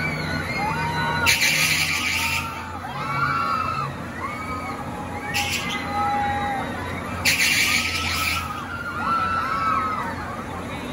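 Riders on a swinging pirate-ship ride screaming, with loud surges every few seconds as the boat swings, over many short shrieks and shouts from the crowd and a steady low hum.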